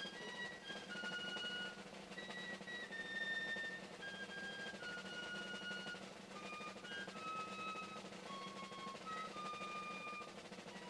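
A ceremonial band plays faintly: a slow melody of high held notes, one at a time, with snare drums.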